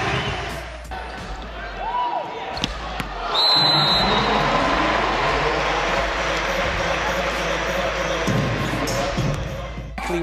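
Indoor volleyball match: ball strikes over arena crowd noise, which swells into a dense, steady crowd din about three and a half seconds in.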